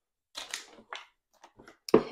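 Plastic water bottles handled and set into a cooler: soft crinkles and knocks about half a second and a second in, then a few small clicks near the end.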